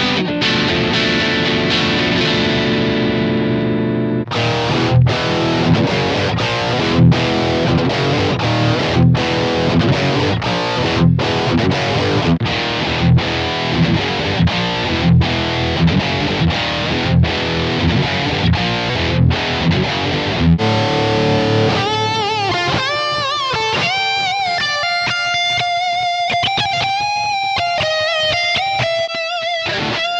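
Distorted electric guitar through a Blackstar digital combo amp on its OD1 lead setting, with modulation, delay and reverb. A chord rings out first, then a chugging riff with accents about once a second, and about two-thirds through it gives way to a single-note lead line with bends and vibrato.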